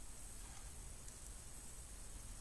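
Near silence: quiet room tone, a faint steady hiss.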